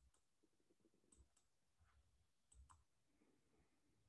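Near silence, broken by three faint double clicks about a second apart, most likely a computer mouse being clicked.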